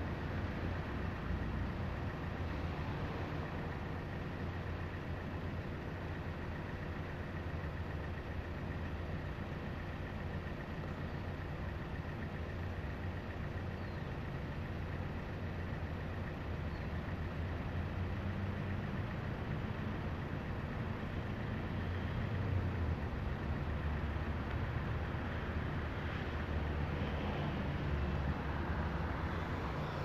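A steady low rumble of outdoor background noise, even throughout, with no distinct events.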